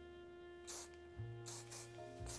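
Background music of long held chords, with short hisses from an aerosol hairspray can: one about two-thirds of a second in and a longer one near the end.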